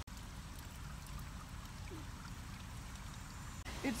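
Steady trickle of running water from a garden pond, over a constant low rumble.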